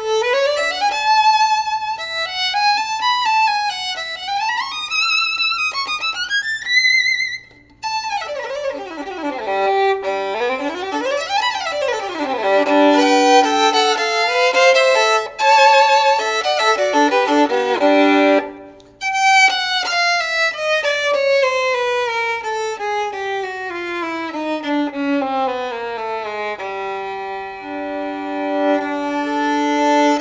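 Holstein Traditional Vuillaume violin played solo with a bow: rising slides and quick runs with vibrato, broken by two short pauses, then long falling lines and sustained notes near the end.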